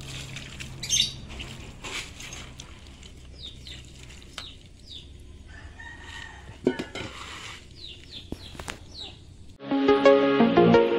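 A rooster crowing in the background about six seconds in, with small birds chirping and a few sharp knocks and water splashes as a sickle blade and a water container are handled. Electronic music comes in just before the end.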